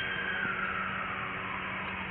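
Steady hiss with a low hum underneath and a faint tone that falls slowly in pitch.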